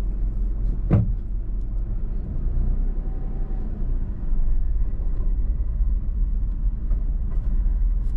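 Steady low cabin rumble of a Suzuki S-Presso being driven, engine and road noise heard from inside the car, with a single sharp click about a second in.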